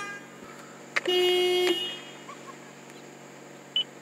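Car horn of a 2020 Toyota Corolla giving one short honk about a second in, lasting under a second, heard from inside the cabin over the steady hum of the idling engine.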